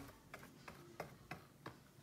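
Very quiet, irregular light clicks and taps, about seven in two seconds, from a brush working Mod Podge over the painted petals of a mirror frame.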